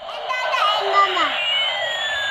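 Battery-operated bump-and-go toy airplane playing its electronic jet sound effect: a steady rushing hiss, with a whine that starts falling in pitch a little past halfway.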